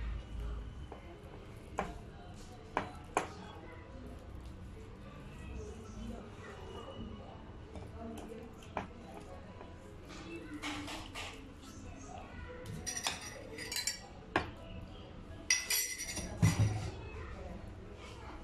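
Wire whisk clinking and scraping against the side of a bowl while stirring a thick flour-and-cornstarch batter: a few separate sharp clinks early on, then busier runs of scraping and clinking in the second half, loudest near the end.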